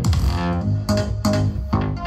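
Bass-heavy electronic dance music played loudly through a Sony mini hi-fi system and its large speaker cabinets, with a pulsing bass line and a steady beat.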